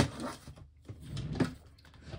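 Handling noises as a plastic ruler is fetched and picked up: a sharp knock right at the start and another, louder noise about one and a half seconds in.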